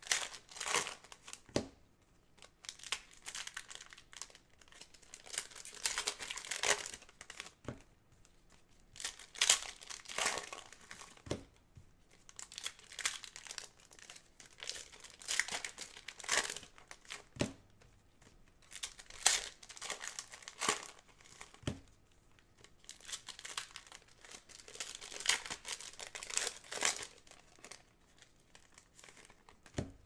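Foil trading card pack wrappers crinkling and tearing as packs are ripped open by hand, in repeated bursts every few seconds, with a few short sharp clicks.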